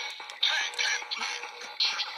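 Electronic music and a synthesized voice jingle playing from DX Kamen Rider Build toys, the Build Driver and the Full-Full Rabbit Tank Bottle, in short sharp-edged bursts as the bottle is slotted into the driver.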